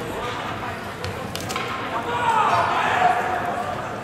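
Echoing ice-rink ambience with voices calling out, a couple of sharp stick-like knocks about one and a half seconds in, and a louder shout whose pitch falls around the middle to late part.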